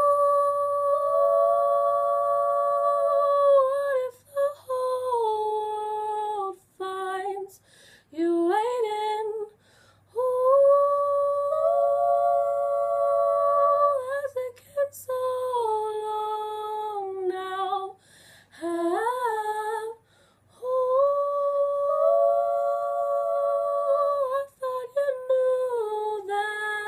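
Wordless a cappella vocalising by young women, an 'ooh'-like hum held on long notes in phrases of three to four seconds, with short breaks and brief slides in pitch between them.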